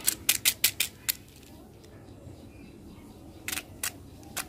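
Hard plastic candy toy clicking as it is handled: a quick run of about five sharp clicks in the first second, then a few more near the end.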